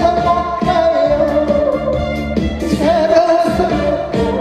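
A man singing into a microphone over instrumental accompaniment with a steady beat, holding long, slightly wavering notes.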